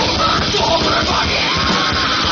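Live heavy metal band at full volume: distorted electric guitars, bass and pounding drums, with shouted vocals over them.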